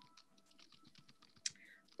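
Faint computer-keyboard typing, a scatter of light key clicks over near silence, with one brief louder sound about one and a half seconds in.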